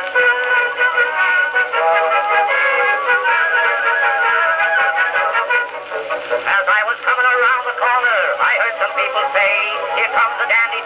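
Edison Blue Amberol cylinder playing on an Amberola 30 phonograph: a small orchestra plays the song's introduction, heard only in the middle range with no bass or treble, as on an acoustic recording. The parts move more and glide in pitch in the second half, and a few faint surface clicks are heard.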